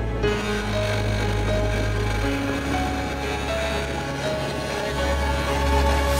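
Background music: slow, held notes over a sustained bass, with no beat.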